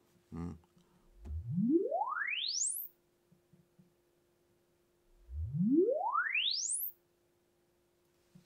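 Hi-fi loudspeakers playing two rising sine sweeps. Each climbs smoothly from deep bass to the top of hearing in just under two seconds, the second starting about four seconds after the first. They are the test signal for measuring the room's acoustic response for digital room correction.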